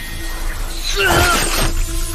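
Cartoon fight sound effects: a magic sword strike with a shattering burst about a second in, over background music.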